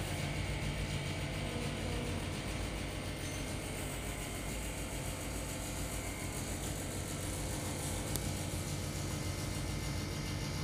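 A steady, low mechanical hum that does not change.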